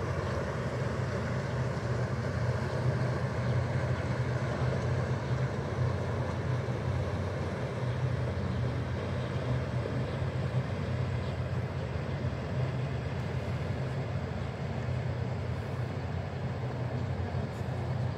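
Steady low drone of a Viking river cruise ship's engines as the ship passes close by, even throughout.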